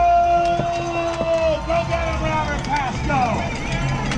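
A race start: a steady horn tone holds and cuts off about a second and a half in while bike cleats click into pedals, then spectators shout and cheer as the pack rolls away.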